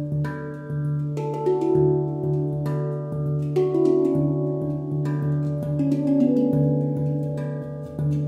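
Svaraa stainless-steel handpan tuned to D Raga Desya Todi (D, F# A B C# D E F# A), played with the hands. The low central note is struck over and over while higher tone fields ring out above it, each strike sustaining and overlapping the next.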